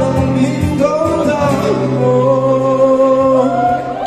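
A male voice singing live to two strummed acoustic guitars, amplified through PA speakers in a large hall; the voice holds one long note in the middle.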